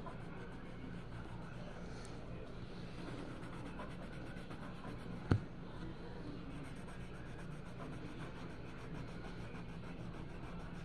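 Colored pencil scratching across paper as it shades in a coloring-book page, over a steady low hum. A single sharp click about five seconds in is the loudest sound.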